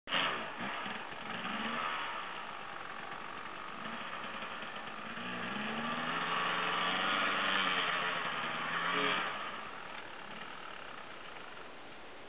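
Enduro dirt bike engine revving in uneven bursts as the bike is wrestled up a steep rocky climb, the revs rising and falling. It is loudest toward the end and then drops away suddenly about nine seconds in.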